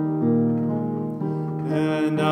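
Piano accompaniment holding slow chords in a pause between sung lines, changing chord twice; a man's singing voice comes back in near the end.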